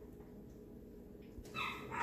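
A short, high-pitched whine about one and a half seconds in, over a faint steady hum.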